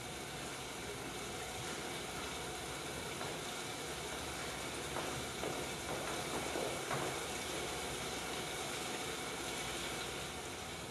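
Steady hiss of room noise in a darkened theatre, with a few soft knocks between about five and seven seconds in.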